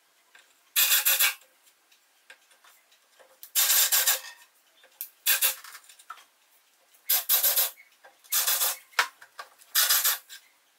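Cordless drill boring into a board table top with a small bit, run in short bursts: about six rasping bursts, each under a second, with pauses between.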